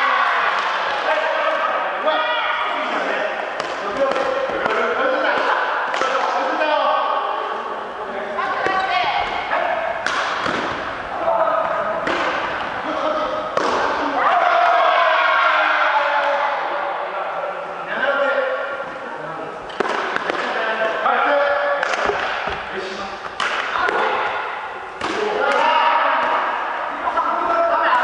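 Voices of people talking in a gymnasium, with scattered sharp knocks and thuds from a badminton game: rackets hitting the shuttlecock and players' feet landing on the wooden floor.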